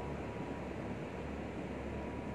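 Steady background hiss and low hum with a faint high whine, machine-like ambient noise with no distinct events.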